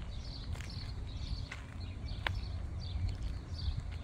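Wild birds chirping, short calls scattered through, over a steady low rumble on the microphone, with a few sharp footstep clicks on a gravel path.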